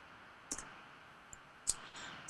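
Two short clicks about a second apart over a faint steady hiss: a computer mouse clicked to advance the slides.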